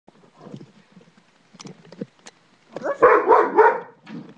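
A dog barking three times in quick succession near the end, after a few faint clicks and rustles.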